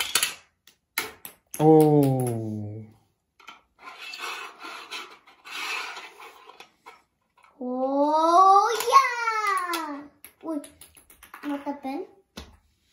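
Sharp plastic clicks and knocks from a toy finger-flick basketball launcher shooting small balls at a mini hoop, with two drawn-out wordless 'ohh' exclamations: a low, falling one about two seconds in and a higher one that rises and then falls around eight to ten seconds.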